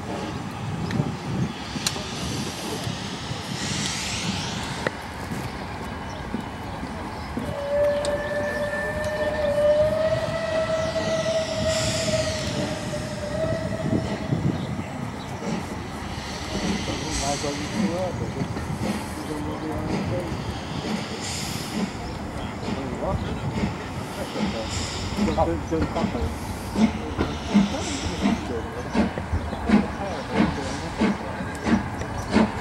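Steam locomotive at the head of a train of coaches, hissing steam and sounding a long, steady whistle that lasts about seven seconds, starting about a quarter of the way in. Near the end a rhythmic beat grows louder as the train gets moving.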